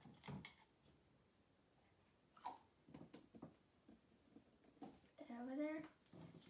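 Mostly near silence, with a few faint clicks and taps from a plastic acrylic-paint bottle and plastic cups being handled, and a girl's voice briefly near the end.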